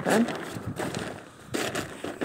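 Plastic tarpaulin rustling and crinkling as it is handled and pulled back, with louder crackly stretches near the start and about a second and a half in.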